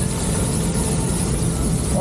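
Water-coaster boat climbing a lift hill: a steady low rumble and rattle from the lift mechanism and the boat riding on the track.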